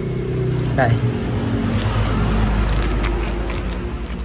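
Hands rustling and handling a small plastic parts bag of bolts and rubber grommets, over a steady low mechanical hum.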